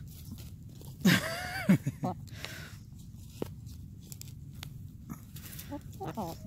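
Hens pecking and scratching in loose soil while foraging for worms, making scattered sharp clicks and short rustles. About a second in there are two short low clucks.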